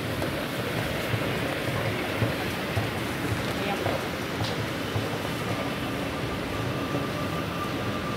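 Steady background hubbub of an underground train station, with indistinct voices in the distance and a faint high tone near the end.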